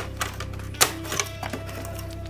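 Light plastic clicks and knocks from handling the opened Korg Pa600's panel circuit board and plastic frame as it is taken apart, a few irregular taps with the sharpest a little under a second in.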